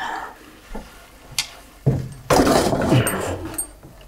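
A large aluminium stock pot being handled: a few knocks of metal, then a longer rough scrape and clatter about halfway through.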